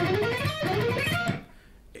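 Electric guitar playing a quick three-notes-per-string E minor scale run that climbs in pitch, breaking off about two-thirds of the way in.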